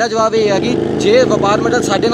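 Men talking while a motor vehicle's engine runs close by for about a second in the middle.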